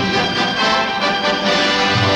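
Orchestral background score playing sustained chords at a steady, full level.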